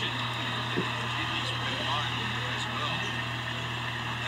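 NBA game broadcast audio: a steady wash of arena background noise with faint play-by-play commentary, over a constant low hum.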